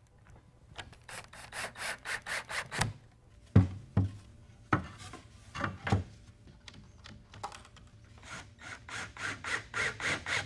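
2x4 lumber being handled and fitted into steel connector brackets on a workbench: runs of quick scraping and rubbing strokes, with several dull knocks of wood against wood between about three and six seconds in.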